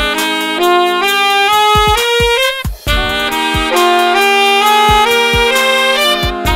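Saxophone playing a riff of held notes that step through a scale mode, over a play-along backing track with a kick-drum beat. The saxophone breaks off briefly a little before the middle.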